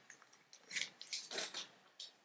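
Cats chewing treats: a few short, faint crunches with small clicks.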